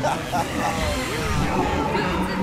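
Overlapping speech: several voices talking at once over a low rumble that grows about a second in.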